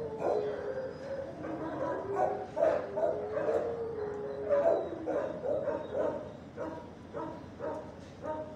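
A dog whining in long, slightly falling tones, then giving a string of short yips and barks in the second half.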